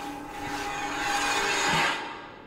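Mechanical whooshing sound effect with a steady hum under it, swelling louder over about two seconds and then dropping off sharply near the end.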